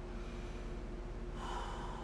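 A man's sharp sniff through the nose while crying, starting about one and a half seconds in, over a steady low hum.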